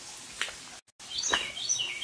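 A bird singing: quick runs of short, high chirps that start just after a brief drop to silence about a second in.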